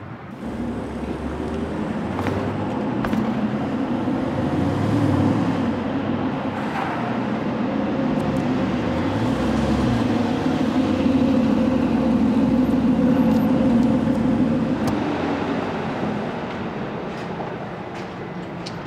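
Car engine running as the car drives, swelling to its loudest about two-thirds of the way through, then easing off as it slows.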